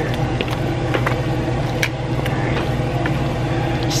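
Wooden spoon stirring a thick vegetable mash in a stainless steel pot, with scattered clicks and scrapes of wood on metal, over a steady mechanical hum from a running appliance.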